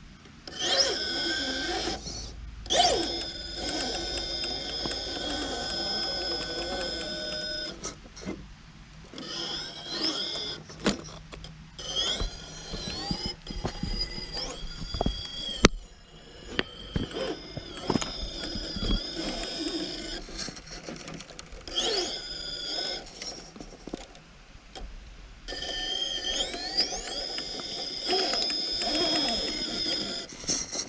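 RC rock crawler's brushless motor and geared transmission whining in runs of a few seconds as it crawls over rocks, the pitch rising and falling with the throttle, with short pauses between runs.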